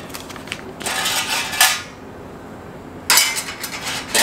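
Metal vent damper and hardware clinking and scraping against the enamelled steel lid of a Weber Jumbo Joe kettle grill as it is fitted: a few light clicks, then two rattling, scraping bursts, the second near the end.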